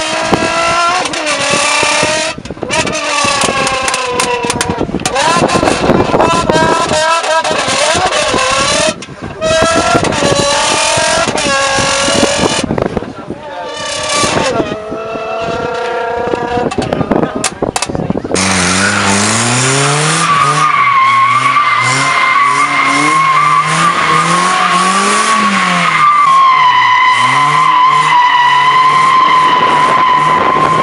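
A man's loud voice through a handheld microphone for the first part. About eighteen seconds in, it gives way to a drifting car, its engine revving up and down under a long, steady tyre squeal.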